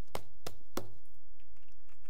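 A sheet of paper being picked up and handled at a desk: three sharp taps and rustles in the first second, then quieter handling.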